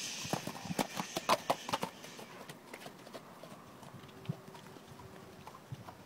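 A horse's hooves on icy, muddy ground: a quick run of knocks in the first two seconds, then a few scattered steps.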